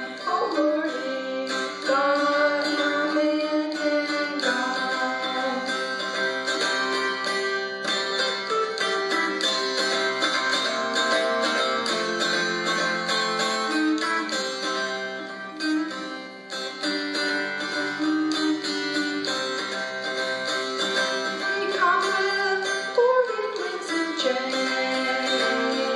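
Mountain dulcimer playing a slow blues melody, the notes plucked and ringing, with a few notes sliding in pitch near the start and again near the end.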